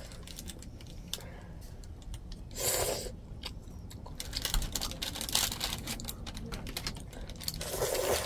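Quick, irregular small clicks and taps from chopsticks and a plastic hair clip being handled, with one short slurp of udon noodles about three seconds in.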